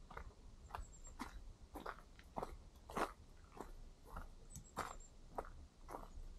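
Footsteps of a hiker walking at a steady pace on a dry dirt trail strewn with leaves, each step a short crunch, about one step every 0.6 seconds, over a low rumble.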